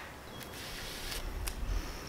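Faint handling noises as a rag is grabbed from a shelf and unfolded: soft rustling with a few light clicks.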